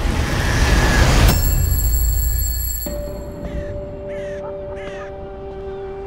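A loud, low rumbling swell with hiss that cuts off suddenly just over a second in. Then a sustained low musical drone begins, and crows caw three times over it, about half a second apart.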